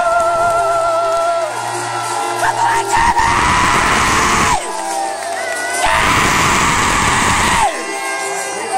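Recorded music with a singer holding a wavering note, then the audience yelling and screaming in two loud bursts, about three seconds in and again near six seconds, over the music.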